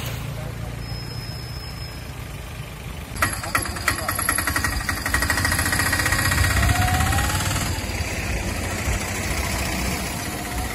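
Vehicle engines running at low speed. About three seconds in, an auto-rickshaw's engine idles close by with a fast, even clatter that fades after a few seconds.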